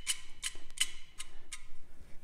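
Whole nutmeg grated on a small hand-held nutmeg grater, in quick, even rasping strokes at about three a second.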